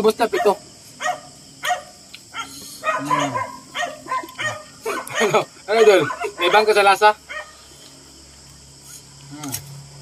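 Men laughing, with short murmured vocal sounds in bursts.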